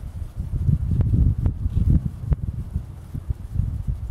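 Wind buffeting the microphone outdoors, a gusty low rumble that rises and falls, with three small sharp clicks in the first half.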